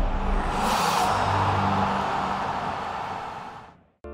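Animated-intro sound effect: a swelling whoosh over low held musical tones, fading out near the end.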